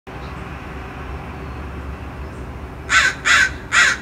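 A bird calling three times in quick succession, each call short and loud, starting about three seconds in, over steady low outdoor background noise.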